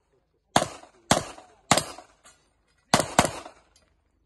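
Five handgun shots on an outdoor range, each with a short echo. The first three come about half a second apart, then after a pause of about a second two more follow in quick succession.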